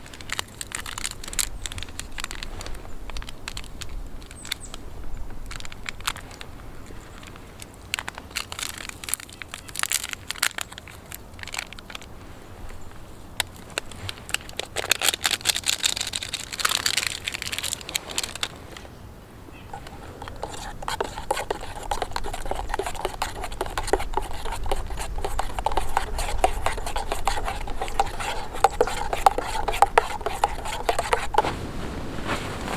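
Crinkling, tearing and scraping of a packet being handled, over many small sharp crackles and clicks of a campfire. The sound grows steadier and louder in the last third.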